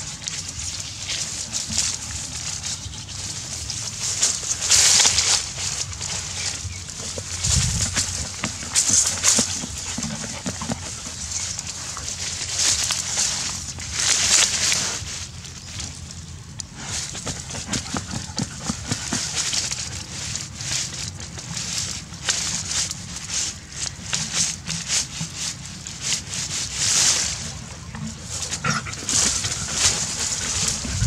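A dog nosing and digging at a hole in dry grass and soil: continuous rustling and scratching, with louder noisy bursts every few seconds.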